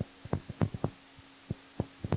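Pen stylus tapping on a drawing tablet while handwriting a word: about seven short, irregular taps over a faint steady hum.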